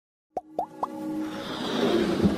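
Animated-intro sound effects: three quick plops, each rising in pitch, about a quarter second apart, then a swelling whoosh with music building underneath.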